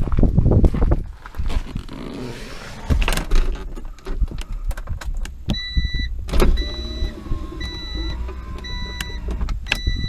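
A 1992 Honda Prelude's electronic warning chime beeps about once a second from about halfway through, with the door open and the key in the ignition. Before it come scattered clicks and knocks from the car's interior.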